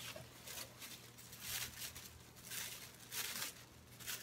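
Thin plastic grocery bag crinkling and rustling as it is handled, in several short, faint rustles.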